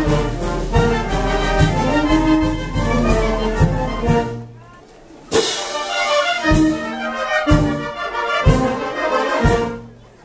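Wind band of clarinets and brass playing. The music drops away briefly about four seconds in, comes back with a loud accented chord, then carries on with heavy beats about once a second before falling off near the end.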